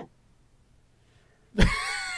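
Near silence for about a second and a half, then a person starts laughing near the end, with a low thump as the sound begins.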